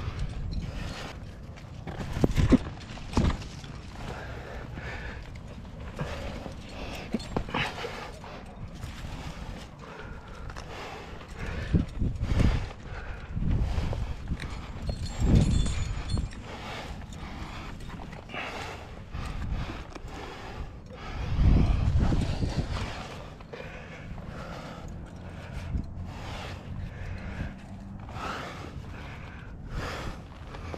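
A rock climber's close-miked breathing as he climbs, with rustle and scrapes of hands, shoes, clothing and rope against the limestone. Irregular low rumbles from wind or handling on the body-mounted camera's microphone come through, the loudest about three quarters of the way in.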